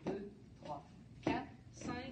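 Shoes stepping on a wooden dance floor during line-dance steps: several short, sharp taps and scuffs, roughly one every half second.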